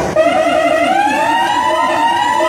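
Siren sound effect over a hall's PA system: a wailing tone with overlapping layers that climbs for about a second and a half and then holds, coming in just after a brief break in the music.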